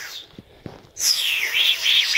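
A man's breathy, high-pitched whooping noises of delight, rising and falling in pitch, with a couple of faint clicks about half a second in.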